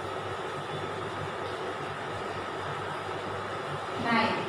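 Steady background hum and hiss of room noise.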